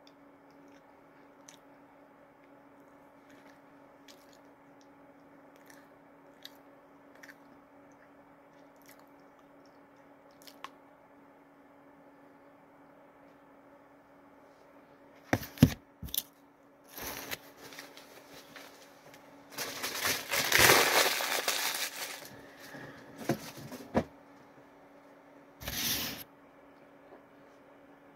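Paper rustling and crinkling, with a few sharp clicks just before it. It comes in bursts over the second half and is loudest about three-quarters of the way through. Before that there is a long quiet stretch with a faint steady hum and a few faint ticks.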